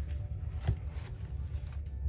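Brown paper towel wrapping rustling as hands pull it back off a stack of clay slabs, with one soft knock a little under a second in, over a low steady hum.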